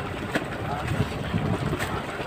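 Wind buffeting the microphone on the open deck of a fishing boat, with background voices and a couple of light knocks.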